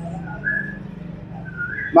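Two short, high whistle-like notes about a second apart, each rising slightly, over a steady low hum.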